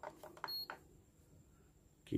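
A digital coffee scale gives one short, high electronic beep as a button is pressed, among a few light clicks and taps of handling the scale.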